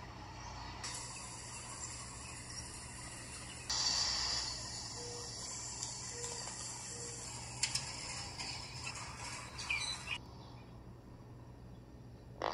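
Outdoor ambience: a steady, high-pitched insect drone with a few faint chirps. The drone jumps louder and softer abruptly a few times and stops about two seconds before the end.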